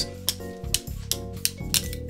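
Background music with steady held notes, over which metal linking rings clink sharply against each other several times.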